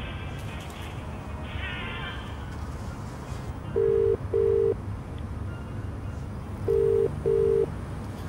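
Telephone ringback tone, the sound of a call ringing at the other end: two double rings, each a pair of short steady beeps, about three seconds apart. The first double ring comes about halfway in and the second near the end.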